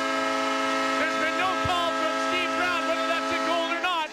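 Arena goal horn sounding one long steady blast after a goal, with a voice shouting over it; the horn cuts off near the end.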